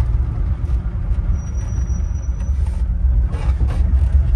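Steady low rumble of a 1980 Chevrolet pickup's engine and drivetrain, heard inside the cab while it is being driven.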